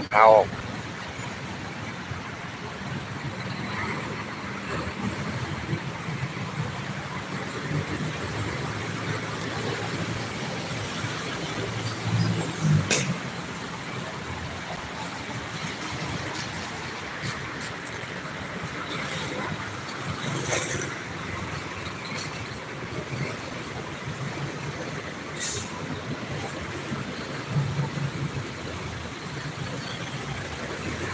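Steady roadside traffic noise from a busy multi-lane city road, with cars and motorbikes passing. A couple of louder vehicles go by, one about twelve seconds in and one near the end.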